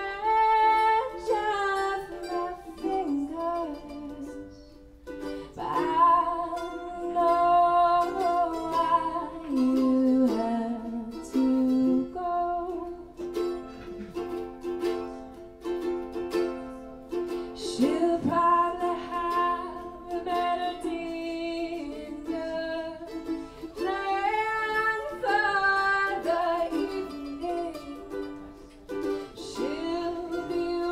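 A woman singing a song in the key of F while strumming a ukulele, with a mandolin playing along. The vocal phrases break briefly about five seconds in and again near the middle.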